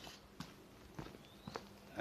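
Faint steady low hum of a running home-built microwave oven, with a few soft ticks.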